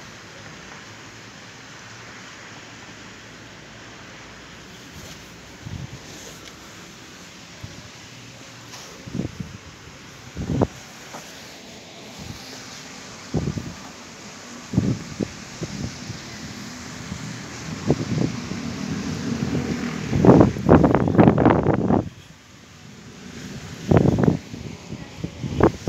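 Steady outdoor background with a distant traffic hum. From about nine seconds in come irregular knocks and rumbles of wind and handling on the phone's microphone while walking. They are loudest in a dense burst about twenty seconds in.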